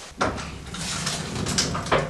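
Heavy roller of a historic hand printing press rolling over paper laid on an inked linocut block: a steady rumble that starts just after the beginning, with a knock near the end.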